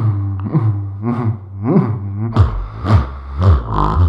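Beatboxing into a handheld microphone: a steady low vocal bass drone starts right away, with sliding pitch sweeps over it. From about halfway in, kick-drum sounds come roughly twice a second.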